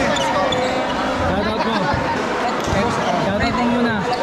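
Several people talking over one another, with a few thuds of a basketball bouncing on the court.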